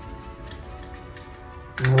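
Soft background music with a few faint light clicks, from a clear sticker sheet being pressed into a small metal tin.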